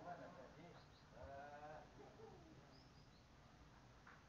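Faint animal call: one wavering, pitched cry lasting under a second, about a second in, amid faint distant voices.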